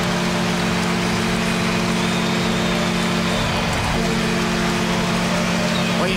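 Arena goal horn sounding in long, steady blasts, with a short break about four seconds in, over a loudly cheering crowd: the signal of a home-team goal.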